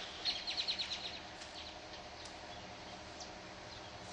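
A bird calling: a quick run of about eight high chirps in the first second, then scattered faint chirps over a steady outdoor background.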